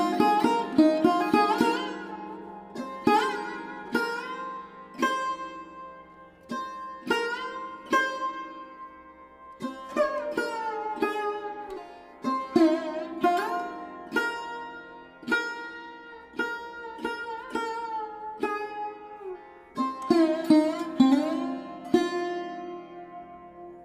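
Background instrumental music: a plucked string instrument playing separate notes that bend in pitch after each pluck, over a steady drone.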